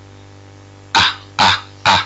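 A person coughing three times in quick succession, starting about a second in, over a steady low electrical hum on the recording.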